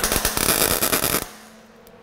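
MIG welder laying a tack weld on 16-gauge sheet steel: one harsh crackling burst of about a second, then it stops. The shielding gas is off, so the arc sounds yucky and spatters, a sign of a dirty weld.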